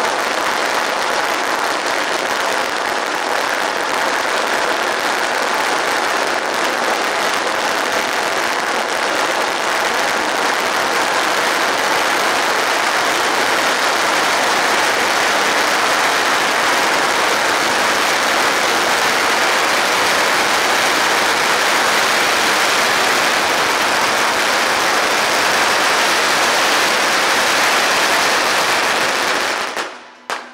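A long string of firecrackers going off in one continuous rapid crackle, steady throughout, cutting off abruptly at the very end.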